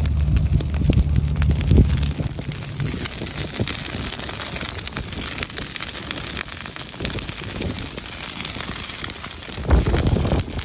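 Dry prairie grass burning, with a dense, steady crackle of many small snaps as the flames spread through the stalks. A low wind rumble on the microphone covers the first two seconds or so and comes back briefly near the end.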